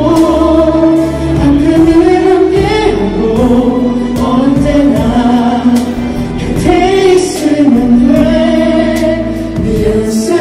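Singers performing a musical-style wedding song into microphones, with instrumental accompaniment; long held notes that glide between pitches.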